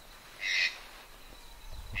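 A single short bird call about half a second in, with quiet outdoor background around it.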